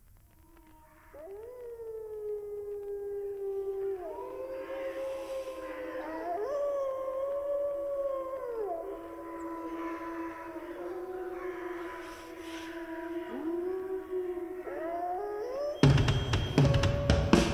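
Several wolves howling together: long overlapping howls, starting about a second in, each rising at the start and falling away at the end. Right at the end a black metal band comes in loudly.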